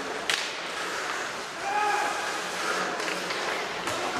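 Ice hockey play in a large, mostly empty rink: a sharp crack about a third of a second in and another near the end, over a steady hiss of skates on ice. Players shout short calls to each other in the middle.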